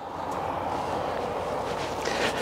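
A steady rushing noise with a low rumble beneath it, holding even throughout with no distinct knocks or tones.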